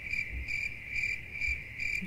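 Crickets chirping, a steady high chirp pulsing evenly about two and a half times a second: the comic "crickets" sound effect for an unanswered question and an awkward silence.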